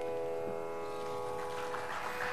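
Tanpura drone: a steady sustained chord rich in overtones, fading a little in its upper overtones toward the end.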